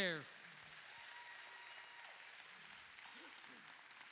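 A church congregation applauding, faint and steady, with a brief faint shout about three seconds in.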